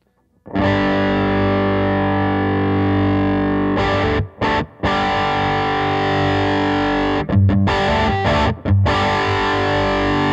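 PRS 513 electric guitar through a Mesa/Boogie Throttle Box distortion pedal on its low-gain side into a Fender Princeton Reverb amp. It plays distorted, sustained chords with a few short stops between them. The pedal's gain starts turned down low and is being brought up.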